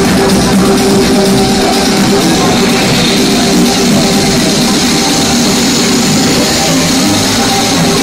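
Loud techno DJ set over a club sound system, in a stretch with sustained synth tones and little deep bass.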